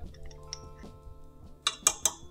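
Metal measuring spoon clinking twice near the end as dry yeast is scooped and tipped into a mixer bowl, over soft steady background music.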